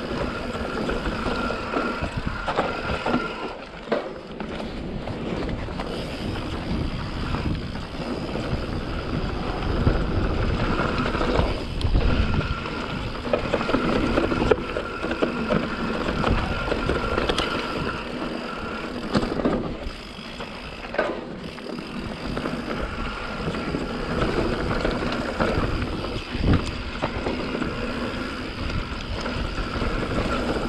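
YT Capra full-suspension mountain bike descending a dirt trail: a steady rush of tyres on dirt with constant rattling from the bike, and sharper knocks as it hits bumps.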